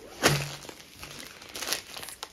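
Clear plastic packaging crinkling and rustling as it is handled, loudest in a sudden rustle just after the start.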